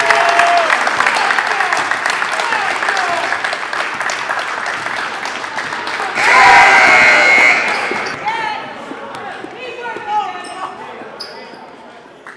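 Gymnasium game sound: a basketball bouncing on the hardwood floor amid voices and crowd noise echoing in the hall. About six seconds in, a louder burst of noise lasts over a second before everything fades away.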